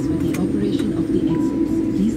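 Steady hum inside a Boeing 787 airliner's cabin on the ground, with passengers' voices running underneath.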